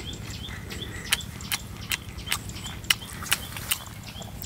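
Chewing with sharp, crisp clicks about two or three a second, starting about a second in: a mouthful of cooked eel and rice being crunched.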